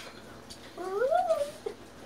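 A person's voice making one drawn-out, wordless sound that rises and then falls in pitch, about a second long, followed by a small click.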